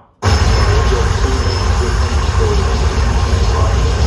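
Harsh noise from a live rig of effects pedals and a mixer cuts in abruptly about a quarter second in: a loud, dense, unbroken wall of noise with a heavy deep rumble and faint wavering tones in the middle.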